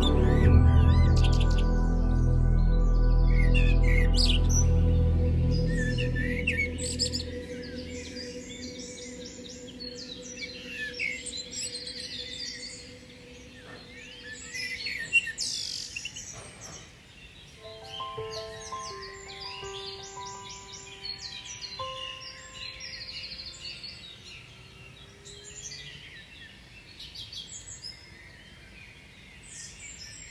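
Background music of sustained chords with a deep bass fades out over the first several seconds, leaving many songbirds chirping and singing for the rest of the time. There is one brief sharp click about halfway through.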